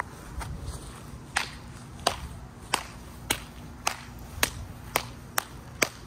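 Footsteps at a steady walking pace, a little under two steps a second, each step a sharp slap, about nine in all from just over a second in.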